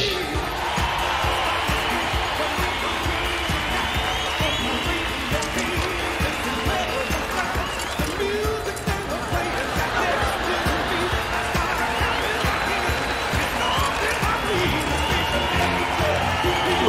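Recorded rock music with a steady low beat, mixed with a large live audience laughing and cheering.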